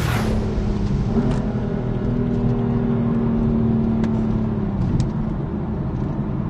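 Stage 3 JB4-tuned BMW M4's twin-turbo inline-six under power, heard from inside the cabin: a steady engine note that climbs slightly about a second in, holds, then falls away near the end. A short whoosh opens it.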